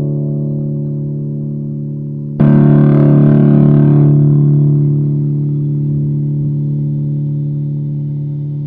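Distorted electric guitar, a B.C. Rich Warlock through a Marshall MG10 practice amp: a held chord rings and fades, then a new chord is struck about two and a half seconds in and left to ring out slowly.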